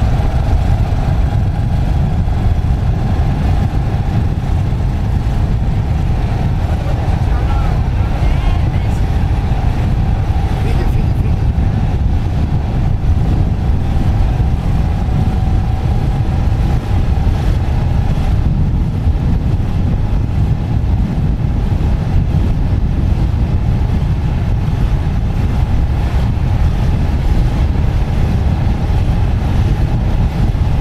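Steady low rumble of a slowly moving vehicle, with wind noise on the microphone, unchanging throughout.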